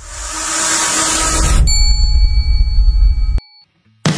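Intro logo sound effect: a whoosh swells for about a second and a half over a deep rumble, then a bell-like ding rings out with the rumble under it, and everything cuts off suddenly a little before the end.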